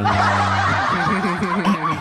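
Men laughing in short chuckles over the end of a long held vocal note, which stops just under a second in.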